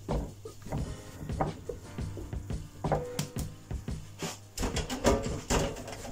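Naan dough being turned out of a glass mixing bowl onto an oiled wooden board and handled: a few irregular knocks of the bowl and hands on the wood, with soft slaps of the sticky dough.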